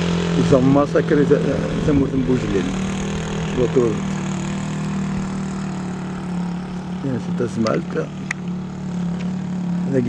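An engine idling with a steady low hum, with a man's voice heard at times over it.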